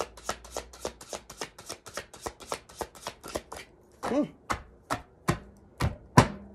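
Tarot cards being shuffled by hand: a quick, even run of soft card slaps about six a second that stops about three and a half seconds in, followed by a few slower, sharper taps near the end.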